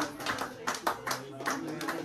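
Hand clapping by a small group in a room, about three claps a second, over murmured voices and steady held tones.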